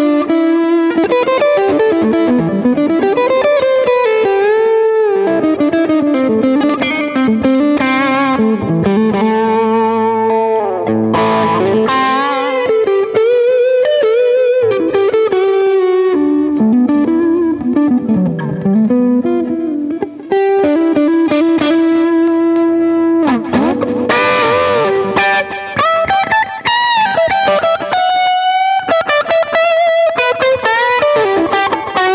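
Electric guitar played through a TC Electronic MojoMojo overdrive pedal: a single-note lead line with string bends rising and falling and wavering vibrato on held notes.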